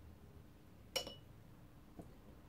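A single sharp metallic clink with a short ring about a second in, as the brush and metal watercolour paint box are handled and set down. A fainter knock follows near the end, over quiet room tone.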